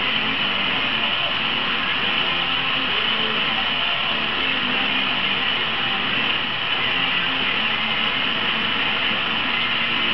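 Hand-held canister torch burning with a steady hiss as glass rods are heated in its flame.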